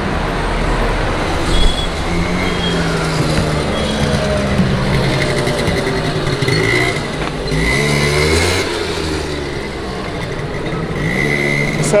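Road traffic on a city street: cars driving past alongside, their engines rising and fading as they pass.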